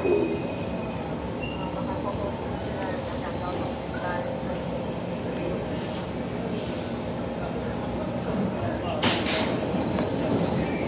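Steady rumble of a Taipei Metro train standing at an underground platform behind screen doors, mixed with faint station chatter. A short hiss comes about nine seconds in.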